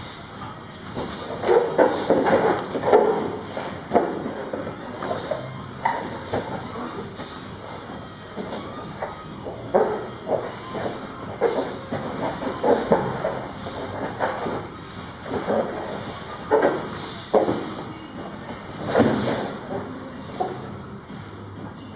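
Two men grappling on foam gym mats: irregular scuffs, shuffles and thumps of bodies and limbs shifting and landing on the mats, coming in uneven bursts.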